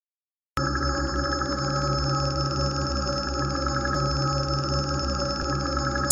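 Steady electronic ringing drone of several held pitches with a fast flutter, starting suddenly about half a second in after silence: the opening of an intro soundtrack.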